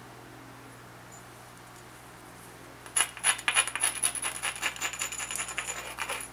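Abrader stone rubbed rapidly back and forth along the edge of an obsidian knife blank: a fast run of scratching clicks that starts about halfway in and lasts about three seconds, loudest at its start. The rubbing grinds down the edge to prepare it for the next flake removal.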